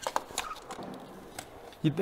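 A few light, sharp clicks of bolt hardware and hand tools being handled during a snowmobile front-bumper install, spread over a quiet stretch.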